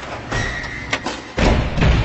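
Produced logo-intro sound effects: a run of heavy, deep thuds with swishing noise between them, the loudest two near the end, ringing away afterwards.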